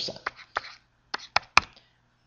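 Pen or stylus tapping and clicking on a drawing tablet while writing, about five short sharp taps spread through two seconds, the loudest near the end.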